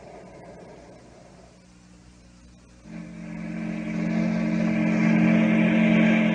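Sound effect of a sternwheel steamboat under way: a steady low mechanical drone that fades in about halfway through and grows louder.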